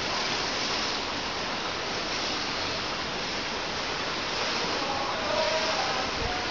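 Steady rushing, water-like noise of an outdoor swimming pool, with faint distant voices near the end.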